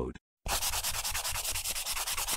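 A scratchy rubbing sound effect, fast and even at about ten strokes a second, starting about half a second in after a brief silence.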